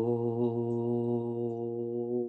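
A man chanting a long "Om" on one low, steady held note.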